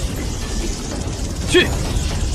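Animated magic-effect soundscape: a dense, steady low rumble with rattling crackle, as of a lightning energy attack. A brief strained grunt or cry comes about one and a half seconds in.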